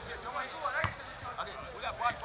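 Football players' shouts and calls across the pitch, several short voices overlapping, with a single ball kick a little under a second in.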